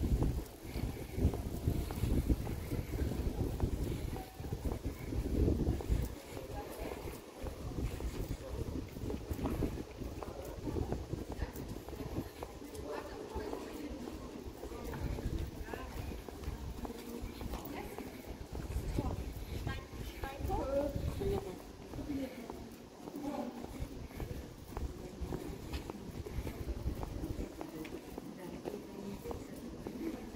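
Street ambience: passers-by talking, with footsteps and a low rumble of wind on the microphone that is heaviest in the first few seconds.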